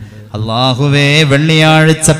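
A man's voice intoning an Islamic supplication (dua) in a drawn-out, chanted way. After a brief pause he holds long, mostly level notes that rise and fall.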